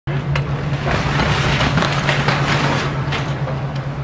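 A steady low hum of an armored truck's engine running, with scattered light knocks and clatter as cargo is handled in the truck's bay.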